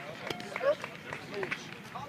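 Chatter of several people's voices, players and spectators, overlapping with no clear words. There is a sharp knock about a third of a second in.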